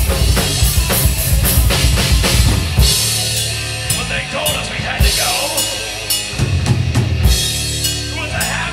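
Live rock band playing an instrumental passage: a drum kit with bass drum and snare under electric guitar. The drumming is fast and dense at first, then about three seconds in it thins to sparser hits under held guitar chords.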